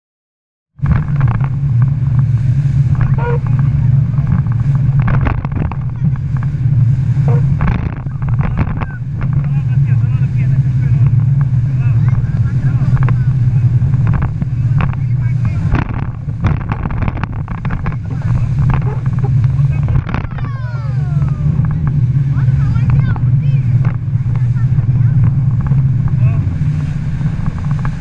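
Tour boat's engines running at speed on a fast river, a steady loud drone that starts about a second in, with water rushing past and passengers' voices calling out now and then.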